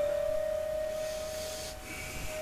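Background film music: one steady held tone, with a faint high hiss about a second in.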